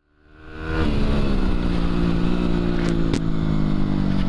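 Yamaha WR250R's single-cylinder four-stroke engine running at a steady cruise, heard from on the bike itself, fading in over the first second. Two sharp knocks about three seconds in.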